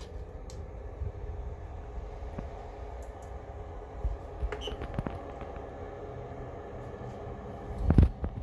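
3D printer's cooling fans running with a steady hum, with a few light clicks as the printer's controls are handled and a sharp knock at the very end.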